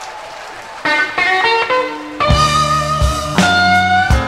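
Electric blues guitar plays a quick solo run of single notes starting about a second in, and the band with bass and drums comes in about halfway through; the guitar holds a long note that bends slightly upward near the end.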